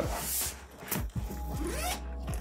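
Zipper on a Wandrd Prvke 31L backpack being pulled open, with a quick zipping run near the start followed by a few soft knocks.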